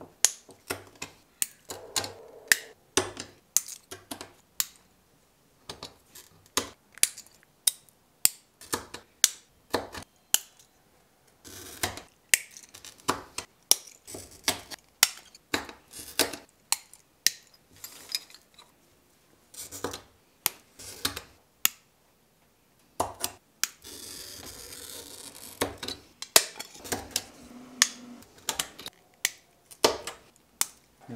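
A Toyo glass cutter scoring stained glass, a scratchy hiss lasting a couple of seconds in the later part, among many sharp clicks and taps of glass pieces being handled, snapped and set down on the pattern.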